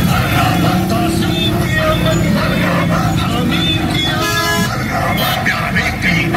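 Procession traffic and crowd: vehicle engines running under many voices, with a vehicle horn sounding once, briefly, about four seconds in.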